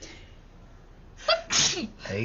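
A woman sneezes once: a short, sharp voiced intake about a second in, then the loud sneeze burst.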